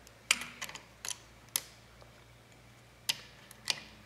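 Light metallic clicks from a stack of feeler gauge blades and the rocker arm of a small four-stroke scooter engine as the stack is worked between the valve tip and the rocker arm and the rocker is pressed down. There are about five clicks in the first second and a half and two more near the end.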